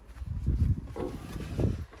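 Low, uneven rumbling noise on a phone's microphone.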